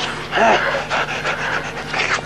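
Panting breaths during a scuffle, with a short gasp about half a second in.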